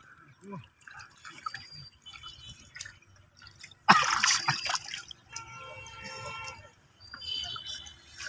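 Hands groping and sloshing in shallow muddy water while feeling for fish, with small drips and squelches, and one louder splash about four seconds in as the hands churn through the mud.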